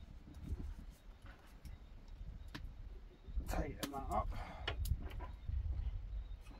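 A few sharp clicks of plastic and metal handling as the Dwarf 2 smart telescope is fitted onto a tripod's ball-head camera mount, over a low rumble.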